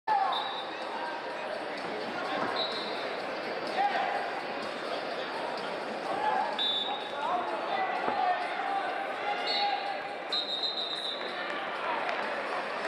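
Wrestling shoes squeaking on the mat in short, high chirps several times as two wrestlers move and hand-fight on their feet, with a few sharp slaps and voices calling out in the hall.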